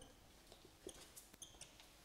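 Faint, short squeaks of a marker pen writing on a whiteboard, about three of them in the second half.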